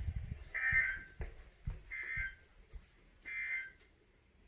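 Midland weather alert radio sounding the NOAA Weather Radio end-of-message data bursts: three short, buzzy two-tone screeches about a second and a half apart, the SAME digital code that marks the end of a broadcast. Low thumps from footsteps and handling run underneath.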